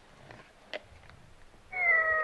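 A cat meow played by a My First Sony EJ-M1000 toy for its cat picture card, starting near the end, fairly steady in pitch and falling slightly. Before it come a few faint clicks.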